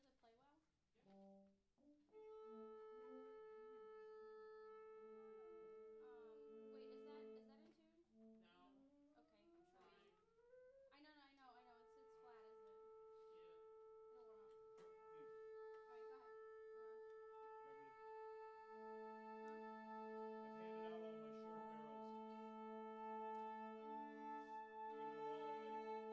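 Long, steady held notes on one pitch, sounded to check the tuning, with sliding pitches in between and a second, lower note joining near the end. The player expects the pitch to sit flat because the instrument is cold.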